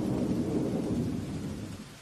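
Thunder sound effect: a low rolling rumble that fades away toward the end.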